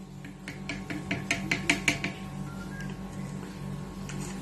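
A spoon tapped repeatedly against the rim of a plastic blender jug to knock strawberry yogurt off it: about ten quick, sharp taps in the first two seconds.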